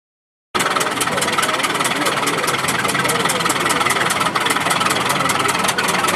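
Engine of a vintage WD large motor plough running at work, with an even, rapid knocking beat of about six to seven strokes a second; the sound comes in abruptly about half a second in.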